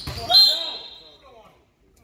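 Sneakers squeaking sharply on a hardwood gym floor and a basketball bouncing, loudest about half a second in and dying away after.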